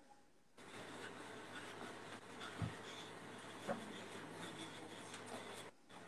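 Faint steady room noise with a few soft knocks and one low thump about halfway through.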